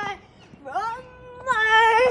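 A young child's high-pitched, drawn-out vocal call: it slides up in pitch about half a second in, holds steady, and gets louder in the last half second.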